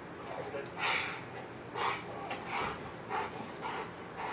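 Police dog on a leash panting: a run of short breathy puffs, about one every half second to second.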